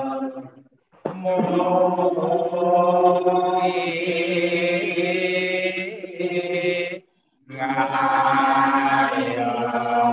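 A man's voice chanting a devotional chant in long, held notes, breaking off briefly for breath just before a second in and again at about seven seconds.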